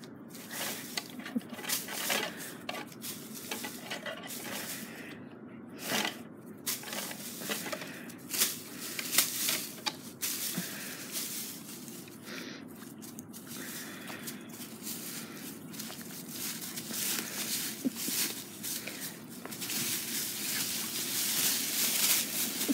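Dry fallen leaves rustling and crunching under a person's footsteps and a small dog's paws, in irregular scuffs that grow denser near the end.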